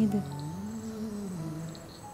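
Background song on the soundtrack: a singer's held note ends just after the start, then a soft, wordless vocal phrase rises, falls and steps lower before fading near the end.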